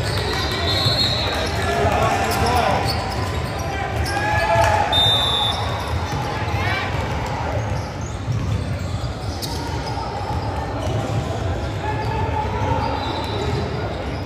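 Indistinct talk from spectators and players echoing in a large gymnasium, with a basketball bouncing on the hardwood floor as the shooter readies a free throw.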